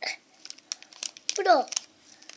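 Foil powder sachet from a DIY candy kit crinkling in the hands as its powder is shaken out, in a string of short sharp crackles. About one and a half seconds in, a child's short vocal sound falling in pitch is the loudest thing heard.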